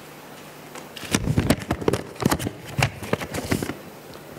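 Paper ballots being handled and unfolded near a table microphone: a dense run of crackles and clicks starting about a second in and stopping just before the end.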